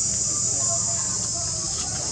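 Steady, high-pitched chorus of insects, such as cicadas or crickets, buzzing without a break.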